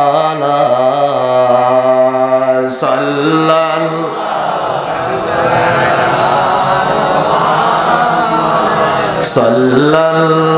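A man chanting a Bengali Islamic devotional song through a stage PA microphone, in long, slowly gliding held notes. For several seconds in the middle the steady notes give way to a rougher, wavering voice, and the held singing returns near the end.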